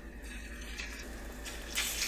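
Oil sizzling faintly in a hot pan as egg-coated shrimp jeon are laid in, the sizzle growing louder near the end.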